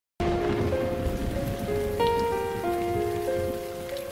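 Steady rain with slow, soft piano notes over it, one held note after another: the quiet intro of a Hindi film ballad before the vocal comes in.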